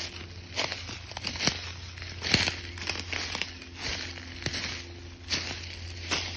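Footsteps crunching through dry fallen leaves on a forest floor, about one step a second, over a steady low hum.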